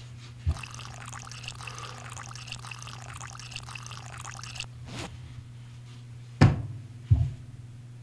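A stream of liquid pouring and trickling for about four seconds: the urine sample being passed. It is followed by a few knocks, the loudest near the end, over a steady low hum.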